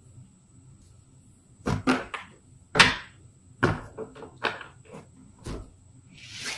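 A tarot deck being shuffled by hand: after a quiet start, about a dozen short, irregular papery slaps and swishes of the cards.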